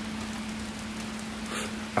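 Steady hissing background noise with a low, constant hum underneath, and no speech.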